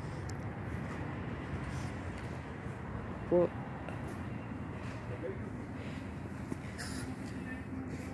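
Steady background noise with no distinct event, broken once about three seconds in by a woman briefly saying a word.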